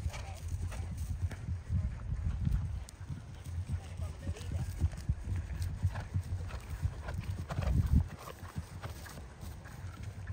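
Hoofbeats of horses cantering on grass, an irregular run of low thuds that is loudest about eight seconds in and then fades.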